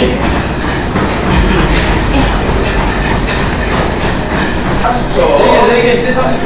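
Manual curved treadmill rumbling and clattering under a runner, with voices shouting over it near the end.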